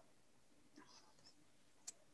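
Near silence: a faint breath about a second in and a single short click near the end.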